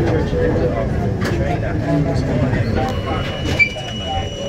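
R42 subway train running on elevated track as it pulls out of a station, a steady rumble with indistinct voices talking over it. A thin, steady high tone joins about three seconds in, with a short squeak just after.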